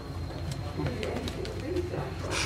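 Low murmur of background voices in a room, with a few light ticks of cards being handled on the table.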